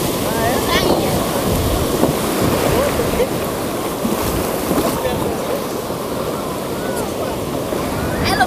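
Shallow sea surf washing and churning around the camera, with wind rumbling on the microphone. Faint voices are heard in the background.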